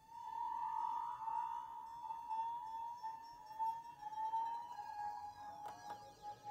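A track playing back over studio monitors during a mix: a held electronic-sounding tone that swells in at the start with a wavering, gliding layer just above it, which thins out over the next few seconds.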